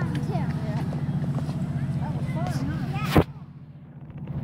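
A steady low machine hum with faint voices over it. A sharp click comes about three seconds in, and after it the hum stops and the sound drops to quiet.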